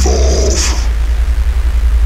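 A steady deep electronic drone from an industrial metal interlude, with a short rough growl in the first half second followed by a hissing haze.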